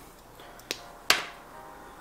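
Two sharp clicks of small plastic model-kit parts being handled and pressed together in the hands, a light one followed by a louder one.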